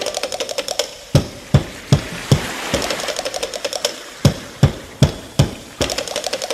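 Percussion break in a recorded song: drums playing a quick, steady beat, with heavy low strikes in short runs and a rapid stream of light clicking strokes between them, and no singing.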